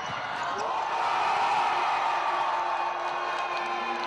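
Live sound of an indoor basketball game: spectators in the stands shouting and cheering, swelling a second or so in, with ball bounces and thumps on the court.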